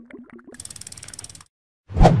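Animated outro sound effects: a few short pitched blips, then about a second of rapid ratchet-like clicking, and a loud sudden whoosh-hit just before the end.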